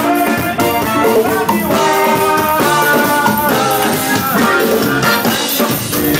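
Live soca music from a band on stage: drum kit and shaker percussion over a steady dance beat, with guitar and other instruments.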